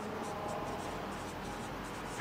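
Whiteboard marker writing on a whiteboard: a quick run of short, scratchy strokes as letters are written.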